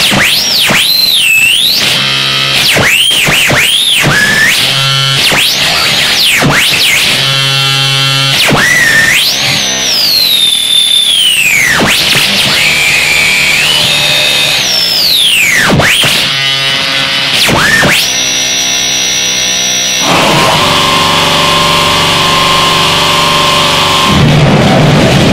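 Loud noise music: tones swooping up and down in pitch over a dense hiss, broken by buzzing passages. Near the end it settles into a steady, sustained buzzing drone.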